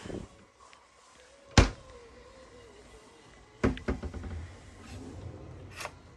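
A mini fridge door pushed shut with a single sharp thud about one and a half seconds in. About two seconds later a kitchen drawer is pulled open with a short run of knocks and clicks.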